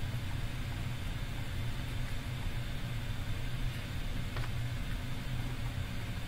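Steady low hum under an even hiss, with one faint tick about four and a half seconds in.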